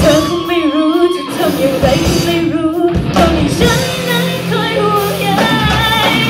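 Live rock band: a female singer holding wavering sung lines over electric guitar, bass guitar and drum kit. The drums and bass drop out twice, about a second in and near three seconds, leaving the voice nearly alone before the full band comes back.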